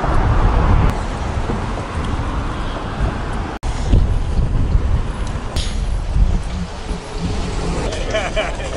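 Road traffic: cars passing on a wide multi-lane road, a steady noise of engines and tyres, broken by a brief cut a little before halfway.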